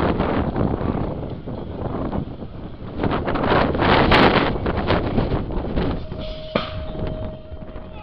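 Wind rushing on the microphone with crowd noise at a BMX start hill. The noise swells for a couple of seconds about three seconds in, as the riders leave the start gate. A steady tone sounds in the last two seconds.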